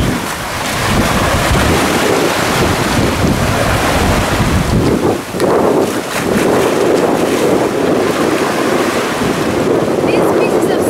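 Small waves washing in and water splashing around stingrays thrashing in the shallows at the shoreline, with wind rumbling on the microphone, heaviest in the first half.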